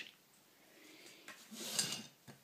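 A ceramic plate being slid across the tabletop and the mandarin brought onto it: a faint rustle that grows into a short scraping noise about a second and a half in, with a light click just before.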